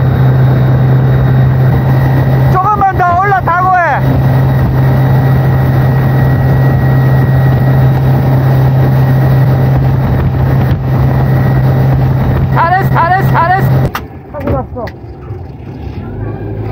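Tow boat's engine running steadily at speed with the rush of its wake, heard from on board, with two brief shouts, about three seconds in and near the end. The engine sound cuts off sharply about two seconds before the end, leaving quieter sound.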